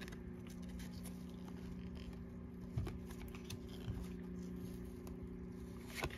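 Faint handling of a stack of trading cards in gloved hands: cards sliding against one another with a few light ticks, over a steady low hum.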